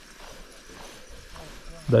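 Faint background sound with no distinct event, and a man's voice starting right at the end.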